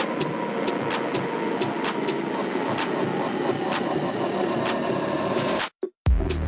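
Beatless stretch of a minimal techno mix: a dense, rumbling noise texture with scattered irregular clicks and a faint steady tone. It cuts to silence just before the end.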